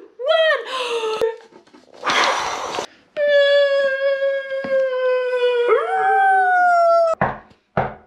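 A hard blowing breath for about a second, the wolf's huff-and-puff blowing the house down, then one long held vocal cry that slides up in pitch near the end, and then two knocks on a wooden door.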